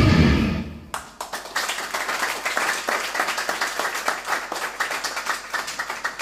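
A live band-backed pop-rock song dies away in the first second, then an audience applauds with many separate handclaps.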